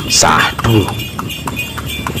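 Horse's shod hooves clip-clopping on asphalt as it pulls a dokar cart, a steady beat of about four strikes a second. A brief voice, louder than the hooves, breaks in during the first second.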